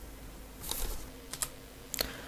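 A few soft clicks of a computer keyboard and mouse, over a faint steady hum.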